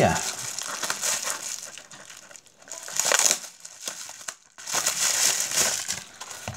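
Plastic bubble wrap crinkling and rustling as a small bubble-wrap pouch is handled and opened, in irregular bursts with short lulls.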